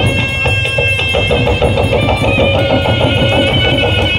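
Gond gudum baja folk ensemble playing live: barrel drums beaten with sticks in a fast, steady rhythm under a shrill reed pipe holding and shifting sustained notes.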